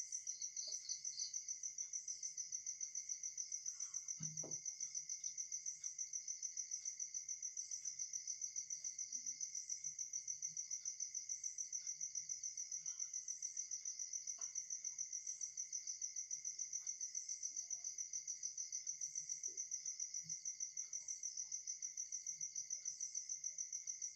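Cricket chirping: a steady high-pitched trill pulsing about four to five times a second, with a few faint scratches of a marker on a whiteboard.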